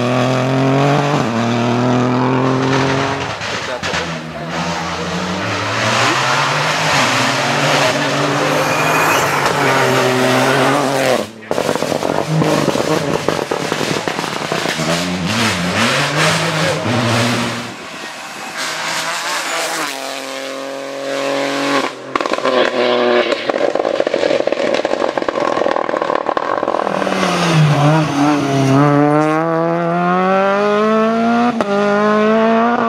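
Rally car engines revving hard on a gravel stage, several passes one after another. The pitch climbs and drops repeatedly with the gear changes, breaking off abruptly about eleven seconds in and again a little past twenty seconds, and climbs steadily near the end.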